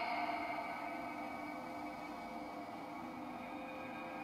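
Quiet, steady ambient drone from a film score. In the first second the echoing tail of a woman's "Hey" fades away.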